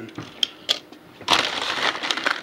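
Two light clicks of a small die-cast toy car being handled and set down. About a second and a half in, a plastic bag starts crinkling loudly as it is rummaged through.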